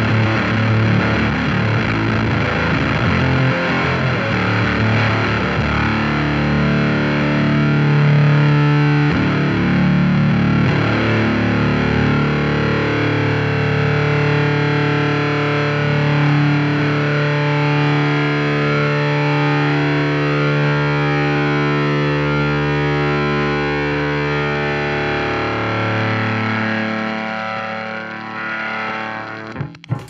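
Electric bass through the Damnation Audio Ugly Twin fuzz pedal into a bass amp, heavily distorted. Busy playing for the first few seconds, then held notes that sustain into long, steady feedback tones for about twenty seconds, with no delay effect, only the pedal. The feedback dies away near the end.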